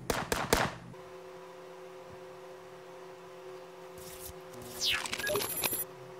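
Small steel parts of a PCP airgun valve clicking together as they are handled and fitted back, a few sharp clicks in the first half-second. A faint steady hum follows, with a brief burst of sweeping noise near the end.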